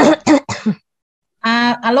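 Three quick, short coughs from a person on a video call, followed about a second later by a woman's voice beginning to speak.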